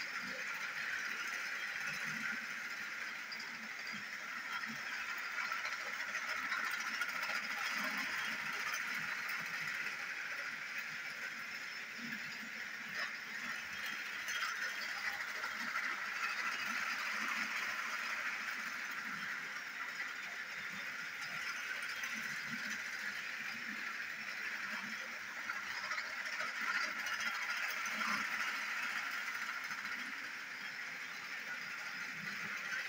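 Two motorized toy trains running on a loop of plastic track: a steady whir of small electric motors and gears with faint clicking, slowly swelling and fading as the trains come nearer and go farther away.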